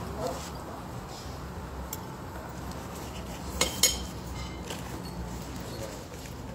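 Steady low background noise with two sharp clinks of tableware, a quarter of a second apart, a little past halfway.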